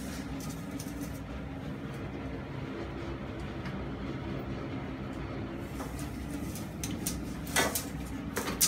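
A steady low machine hum, with a sharp click or rattle near the end.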